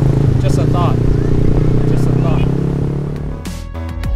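Motorcycle engine running at steady revs while riding, with brief voice sounds over it. About three and a half seconds in, the engine gives way to electronic music with a steady beat.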